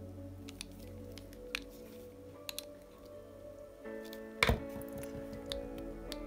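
Soft background music with scattered faint clicks from a hand screwdriver and plastic RC car parts being handled as a small screw is driven home. There is one louder click about four and a half seconds in.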